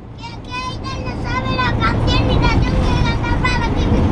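Low road and engine rumble inside a moving motorhome, growing louder about a second in, with a young child's very high-pitched voice calling out in short broken phrases from the back.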